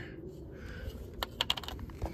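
Handling noise: a cluster of light, sharp clicks and taps about a second in, over a low steady rumble.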